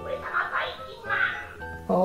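Anpanman Kotoba Zukan DX electronic picture book speaking through its small built-in speaker: a recorded voice in short phrases with music behind it, with the treble cut off.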